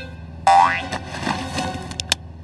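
Cartoon sound effect: a quick rising swoop in pitch, like a boing or slide whistle, about half a second in, over soft background music.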